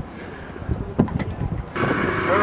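Wind buffeting the microphone with a single sharp knock about a second in. Near the end the sound cuts to an inflatable dinghy's 15 hp outboard motor running steadily under way.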